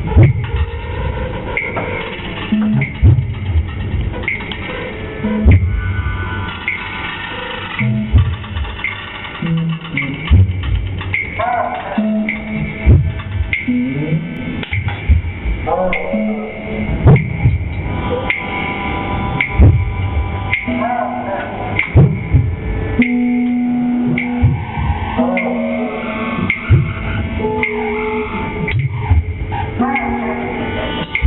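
Improvised experimental electronic music played live: irregular low thumps, short held tones and brief sliding pitches, with no steady beat.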